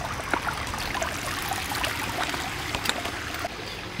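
Small rocky creek running into a pool, a steady trickle and babble of water with many faint small splashing ticks.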